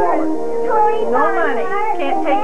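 Several voices overlapping over steady background music with long held notes.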